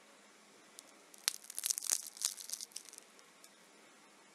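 Crisp, flaky crust of a baked rolled börek crackling as it is handled by hand: a rapid run of small crackles lasting under two seconds.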